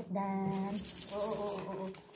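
A woman's drawn-out, sing-song voice. Over it, about a second in, comes a short metallic jingling rattle, like a small dog's collar tag and charms being handled.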